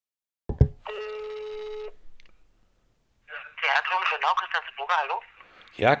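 A click, then a single steady ringback tone lasting about a second as the call rings through. A couple of seconds later a voice answers over the telephone line, sounding thin.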